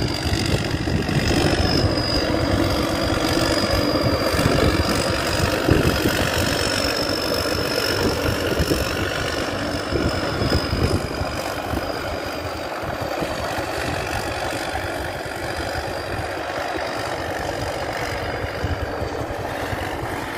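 P. Charoen Phatthana 270 hp tracked rice combine harvester running steadily as it travels, its engine sound slowly fading as it moves away. A thin, high, slightly wavering whine sits over the engine noise.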